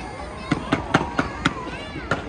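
Fireworks bursting overhead: five sharp bangs in quick succession, about a quarter second apart, starting about half a second in.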